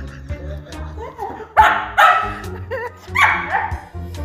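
A small dog barking and yowling in protest at being shooed off its food: two loud barks about one and a half to two seconds in, a short wavering whine, then another drawn-out bark near the end, over background music.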